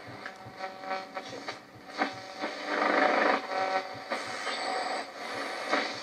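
AM radio static hissing from the Goodmans Quadro 900's small built-in speakers as the tuning dial is swept across the AM band, with faint steady whistles through the noise and a louder swell about three seconds in: weak AM reception with no station coming in clearly.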